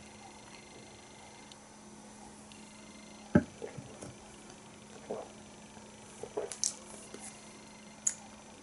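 A stemmed beer glass set down on a table with one sharp knock about three and a half seconds in, then a few faint soft mouth sounds of tasting. A low steady hum runs underneath.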